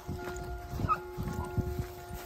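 Segugio Italiano hound giving voice in a long, held note at a steady pitch, with low thuds of movement through brush underneath.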